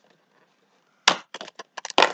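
Cardboard door of a Lego advent calendar being pushed in and torn open along its perforations: a sharp crack about a second in, then a quick series of small crackles and snaps.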